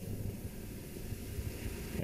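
Quiet, steady low background hum with no distinct events: room tone.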